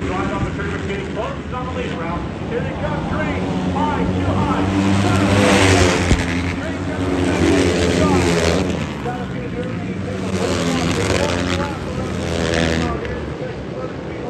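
Flat-track racing motorcycles passing close by on a dirt oval, their engines revving and fading as the pack goes by. There are several passes, the loudest about halfway through.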